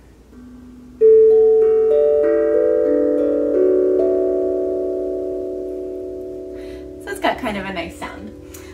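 Harmonic Star 10-inch steel tongue drum struck with a mallet: a soft low note, then about eight notes struck in quick succession over the next three seconds, ringing on together and slowly fading.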